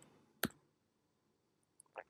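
A single sharp click of a computer keyboard key about half a second in, followed by a couple of faint ticks near the end.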